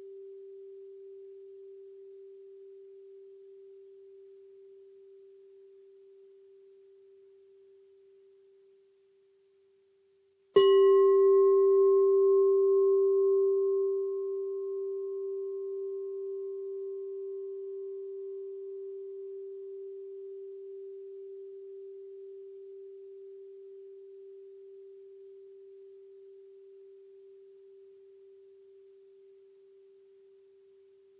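A singing bowl's ringing tone fades almost to silence, then the bowl is struck once about ten and a half seconds in. It rings with a steady low tone and a few fainter higher overtones; the overtones die out within a few seconds while the low tone slowly fades.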